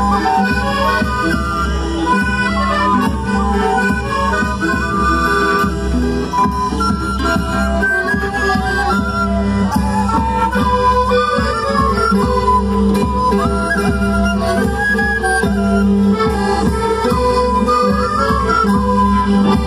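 Andean traditional music for the Qhapaq Negro dance: a wavering melody over a held low note, with a steady drum beat.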